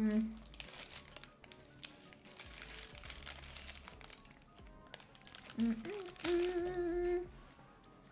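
Paper sleeve around a hotteok crinkling as it is handled while being eaten, with a short hummed "mm" near the end.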